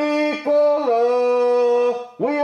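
A long tube blown into like a horn, giving a brassy toot: a short note, a brief break, then a longer held note that drops slightly in pitch and holds.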